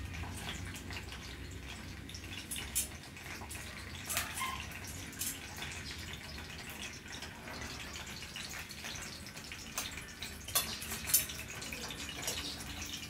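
Dumplings frying in shallow oil in a small skillet: a steady sizzle broken by scattered sharp crackles and pops, the loudest of them near the end.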